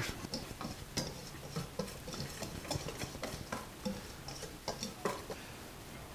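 Whisk stirring a dry flour-and-seasoning mix in a stainless steel bowl: quiet, irregular light clicks and ticks of the whisk against the metal.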